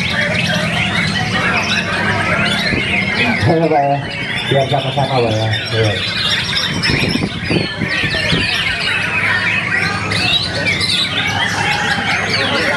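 White-rumped shamas (murai batu) singing in a contest, a dense run of fast, varied whistled phrases and chatter that overlaps throughout, over the voices of a crowd.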